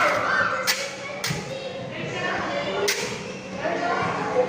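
Metal pins of a pin-art wall clicking and knocking as a hand pushes into them: two sharp clicks about two seconds apart and a dull thud between them.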